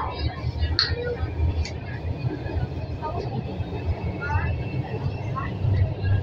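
Carriage noise inside a Lahore Orange Line metro train: a steady low rumble of the train running, with a faint steady high whine over it.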